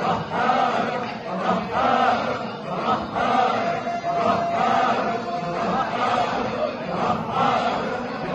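A group of men chanting Sufi hadra dhikr in unison, a short sung phrase repeated in a steady rhythm. One voice holds a long note around the middle.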